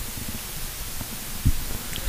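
Steady background hiss and low rumble on the broadcast audio, with a soft low thump about one and a half seconds in.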